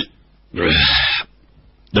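Audiobook narration by a synthesized male voice: one drawn-out syllable about half a second in, set between short pauses, with speech starting again at the very end.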